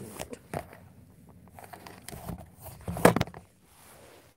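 Handling noise as a phone camera is moved about in a small boat: rustling and small clicks, with one loud knock about three seconds in.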